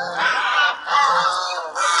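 A flock of farmed waterfowl calling: two rough, pitched calls in a row, each well under a second long.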